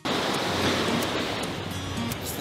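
Ocean surf washing against rocky sea cliffs: a steady rushing noise, with some wind.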